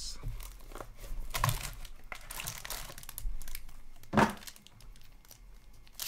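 Foil wrapper of a trading card pack crinkling and tearing as it is handled and ripped open, in short uneven rustles. There is one sharp knock about four seconds in.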